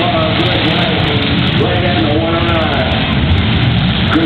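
Dense, loud din of demolition-derby cars' V8 engines running, with a public-address announcer's voice mixed in.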